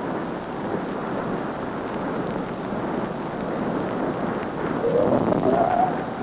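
AN/PPS-5 ground surveillance radar's audio target signal: the Doppler return of a moving jeep, heard as a steady rushing noise, with a faint tone rising in pitch near the end.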